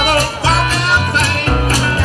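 Live blues band playing: upright bass notes underneath, guitar, and a washboard scraped in a steady beat of about four strokes a second, with a harmonica lead whose pitch wavers and bends.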